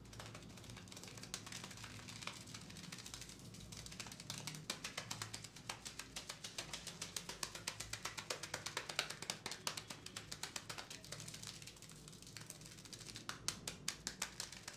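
Barber's fingers working a shampoo-lathered scalp: scrubbing at first, then from about four seconds in a fast, even run of wet taps and strokes on the lather, several a second, which eases off near eleven seconds and picks up again briefly at the end.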